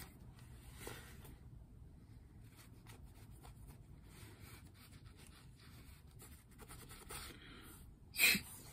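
Very faint scratching and rubbing of a pipe cleaner being handled and twisted between the fingers, with a few tiny clicks, close to silence.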